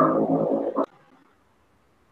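A man's voice holding a long, drawn-out hesitation sound on one pitch, which stops sharply a little under a second in.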